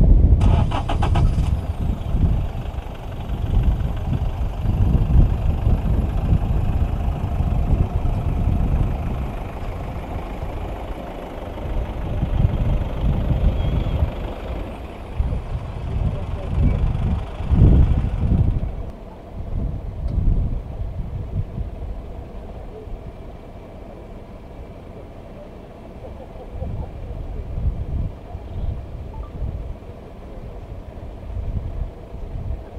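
A vehicle's engine running, with irregular low rumbling gusts of wind on the microphone and some voices in the background. A high hiss stops suddenly about 18 seconds in.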